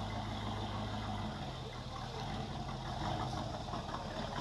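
A car engine idling: a steady low hum that shifts slightly in pitch about a second in.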